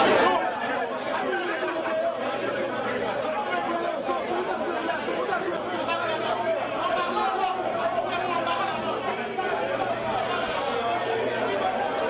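Crowd chatter: many people talking at once in a large hall, a dense, unbroken babble of voices.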